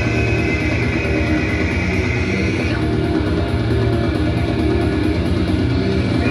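Live heavy metal played loud through a PA: distorted electric guitar over a dense, steady band sound. A high held note rides on top and cuts off a little under halfway through.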